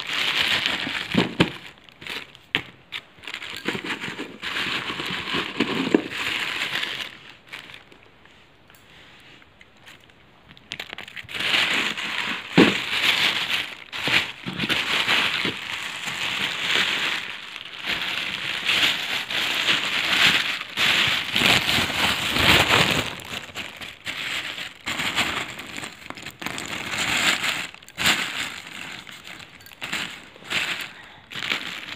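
Plastic bag and paper packets crinkling and rustling as they are handled, with small clicks and taps. It goes quieter for a few seconds about a third of the way in, then the rustling carries on steadily.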